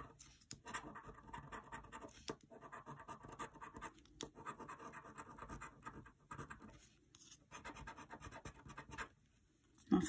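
A coin scratching the coating off a paper scratch-off lottery ticket: runs of quick, short strokes broken by brief pauses, falling silent for about the last second.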